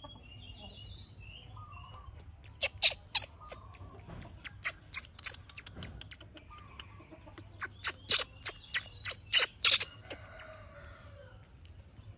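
A baby macaque giving a series of short, high-pitched squeals while being dressed, a quick cluster about three seconds in, scattered ones after, and a longer run from about eight to ten seconds.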